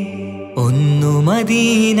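Malayalam Mappila devotional song (Nabidina song). The melody drops out briefly over a steady low drone, then about half a second in a voice or lead line comes back with an upward glide and holds an ornamented note.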